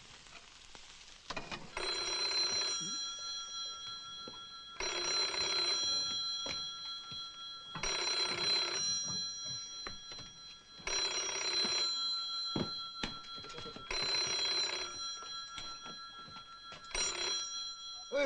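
Corded desk telephone's bell ringing in six bursts about three seconds apart. The last ring is cut short as the handset is picked up.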